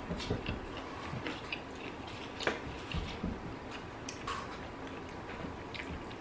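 Close-miked chewing of a breaded boneless chicken wing: soft wet mouth sounds with scattered small clicks.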